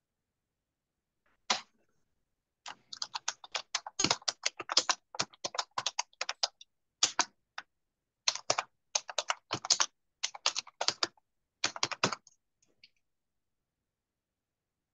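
Computer keyboard typing: a single keystroke, then quick runs of keystrokes with short pauses, which stop shortly before the end.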